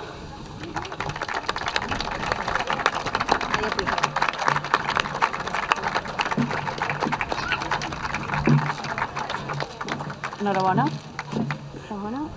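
Audience applauding: a dense patter of hand claps that dies away near the end.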